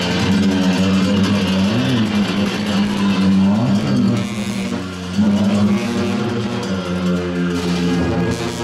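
Tibetan monastic ritual music: a steady, low droning wind tone with a few brief upward bends, over a continuous wash of clashing cymbals.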